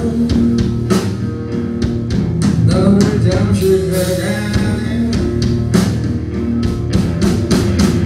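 A rock band playing live: electric guitar and bass over a drum kit keeping a steady beat.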